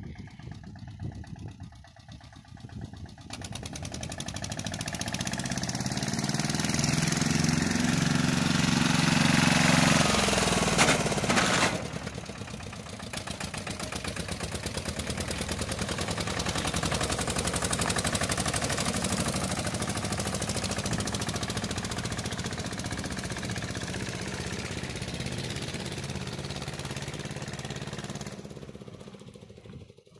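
Pasquali 991 four-wheel-drive tractor's engine driven fast past at speed, growing louder as it approaches. It drops off sharply about twelve seconds in, rises again as it passes close by, then fades away near the end.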